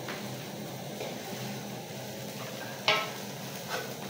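Winged termites (aku) frying without oil in a large aluminium pot, stirred with a wooden spatula: a steady low sizzle with the scrape of stirring. One sharp, louder sound about three seconds in.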